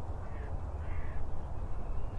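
Outdoor ambience: birds calling, three short calls, over a steady low rumble.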